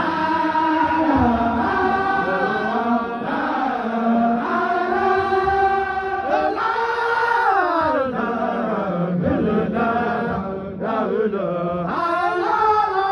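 A group of men chanting a Sufi dhikr (zikr) together, in long drawn-out melodic lines that slide up and down in pitch.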